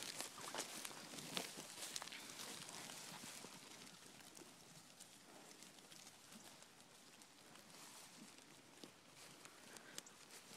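Faint footsteps and rustling through pasture grass among a walking, grazing goat herd, with a few soft clicks in the first couple of seconds.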